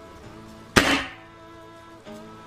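A single shot from a Gamo Swarm Fusion Gen2 air rifle firing a .22 pellet: one sharp crack a little under a second in, dying away quickly. It sits over steady background music.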